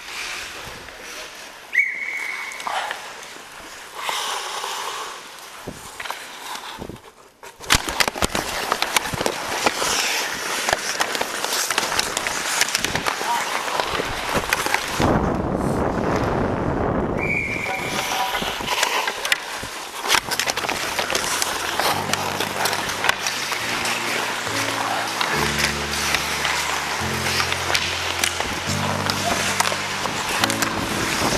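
Ice hockey play heard from a helmet camera: skate blades scraping and carving the ice with sticks and puck clacking, dense and continuous from several seconds in. Two short high tones sound, one early and one about halfway. Background music with a low bass line comes in about two-thirds of the way through.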